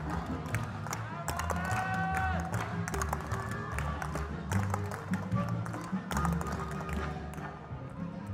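Maglalatik dance: coconut-shell halves strapped to the dancers' bodies being struck together in quick, sharp clacks, over recorded music with a steady beat.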